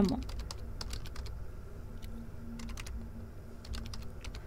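Computer keyboard typing: quick runs of key clicks, with a pause of about a second in the middle.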